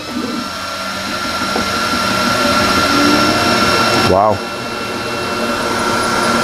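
xTool S1 40W diode laser engraver running as a job starts: a steady fan hiss with a high whine, growing louder over the first few seconds. A brief pitched sweep is heard about four seconds in.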